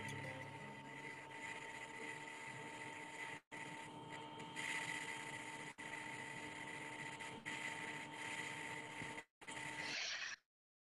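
Faint steady electronic hum and hiss with a few thin steady tones, heard over a video-call line and cutting out briefly a few times.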